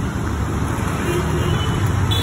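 Street traffic noise: a steady low rumble of passing road vehicles.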